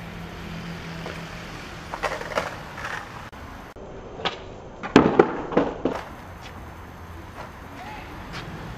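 Skateboard on concrete during a flip-trick attempt: a few light knocks, then about five seconds in a cluster of sharp, loud clacks as the tail pops and the board and wheels hit the concrete.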